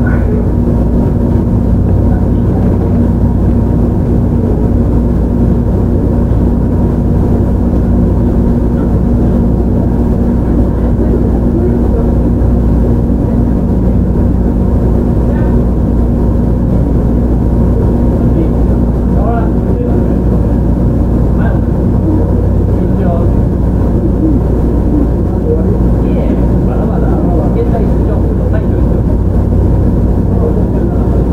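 JR Shikoku 7000 series electric train with Hitachi GTO-VVVF drive, heard from inside the car running at a steady speed: a loud, continuous rumble of wheels on rail with a steady low hum.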